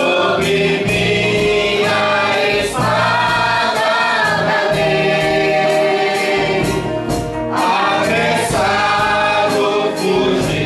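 A man and a woman singing a gospel praise song together through handheld microphones, over instrumental accompaniment with a steady beat and bass.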